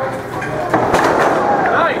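A wrestler's top-rope dive landing on his opponent and the ring mat: a sudden crash about two-thirds of a second in, followed by about a second of noise.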